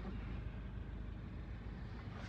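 Faint steady background noise with a low hum and no distinct events.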